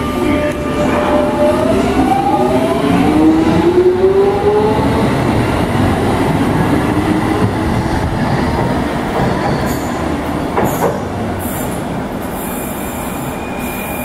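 London Underground S Stock train pulling out of the platform. Its traction motors whine in several tones that rise in pitch as it accelerates, over wheel-on-rail rumble, then it fades to a steady rumble as it draws away. A single sharp clack comes near the end.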